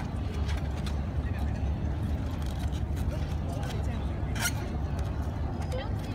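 Open-air street ambience: a steady low rumble with indistinct voices in the background, and a single sharp click about four and a half seconds in.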